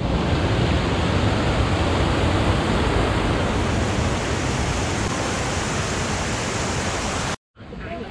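Water pouring over a small stepped stone weir and rushing through a rocky stream, a loud, steady rush that cuts off abruptly near the end.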